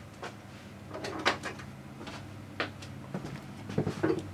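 A few faint, scattered knocks and clicks, typical of a cupboard or drawer being handled off-camera, over a steady low hum.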